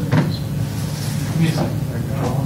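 Meeting-room sound: a steady low hum under a soft knock just after the start and another about a second and a half in, with faint voices in the background.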